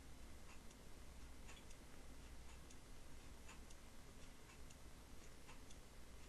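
Near silence: faint background hiss with soft ticks about once a second.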